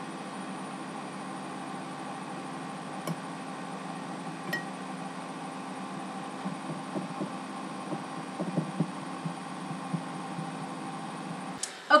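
Steady electrical hum with several fixed tones. It is overlaid by faint, irregular soft taps and scrapes, mostly in the second half, as a fork picks through flaked tinned tuna on a ceramic plate.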